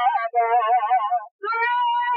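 A voice chanting in a high, wavering pitch with a quick vibrato, breaking off briefly a little past halfway.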